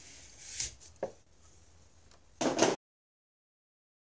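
A cutting wire drawn under a mug across the potter's wheel bat: a faint hiss and a click, then a short, louder scrape about two and a half seconds in, after which the sound cuts off abruptly.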